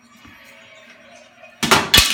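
Faint background television sound, then two loud bangs about a third of a second apart near the end.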